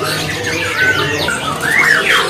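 Many caged songbirds chirping and whistling over one another: a steady tangle of short calls that slide up and down in pitch.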